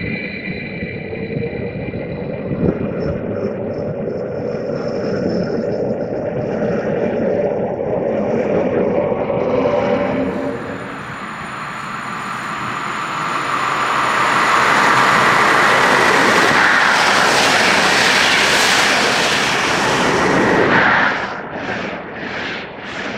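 A LEO Express electric multiple unit pulling out of the station, its wheels rumbling on the rails as it moves off and fades over about ten seconds. Then a passenger train with coaches comes through at speed, a rushing noise of wheels and air that builds from about thirteen seconds in, is loudest late on, and drops off suddenly near the end.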